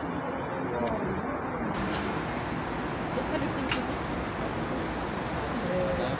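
Indistinct chatter of nearby people over a steady outdoor background rush, with two short clicks, one about two seconds in and one just before four seconds.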